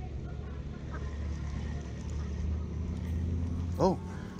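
Steady low rumble of road traffic that swells and fades in the middle. A brief voice cuts in near the end.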